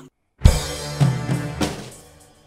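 Acoustic drum kit played in a short fill. After a brief silent gap, a loud first hit of bass drum and cymbal comes about half a second in, followed by three more hits, and the cymbals ring and fade near the end.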